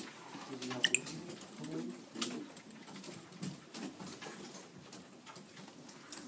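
Scattered clicks of students typing on small tablet keyboards, over a low background murmur, with a brief high squeak about a second in.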